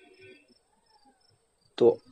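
Quiet pause with faint, high-pitched insect chirping in the background, in short repeated bursts; a man's voice begins speaking near the end.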